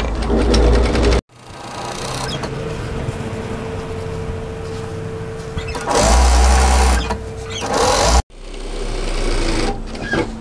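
Industrial single-needle lockstitch sewing machine running steadily as it stitches a seam along a fabric strap. It cuts off abruptly and starts again twice, about a second in and about eight seconds in, and it is louder for about a second around six seconds in.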